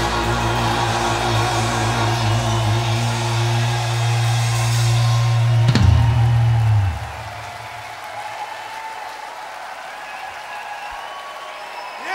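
A live electronic rock band holds its final chord on a steady low bass note under drums and cymbals. The chord ends with one last hit about six seconds in and cuts off a second later. A quieter crowd noise carries on after it.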